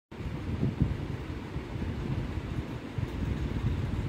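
Low, steady rumbling noise with two soft thumps a little under a second in.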